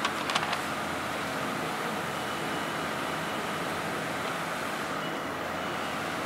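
Steady background noise, an even constant hiss, with a few light clicks in the first half second.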